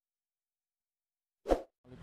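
Silence, then about one and a half seconds in, a single short pop sound effect from an animated subscribe-button overlay.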